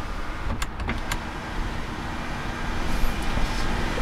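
Hyundai Palisade's electric rear sunshade motor running as the shade slides open over the rear glass roof. A few clicks come about a second in, then a steady motor hum runs until it stops just before the end.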